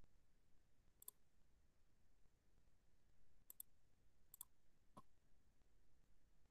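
Faint computer mouse clicks over near silence: a single click about a second in, then two quick double-clicks and a last click near the end, as a screen share is set up.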